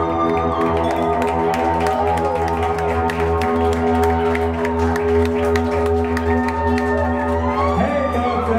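Rock band playing live through a club PA: electric guitars and bass holding long, steady chords, with short sharp hits running through them.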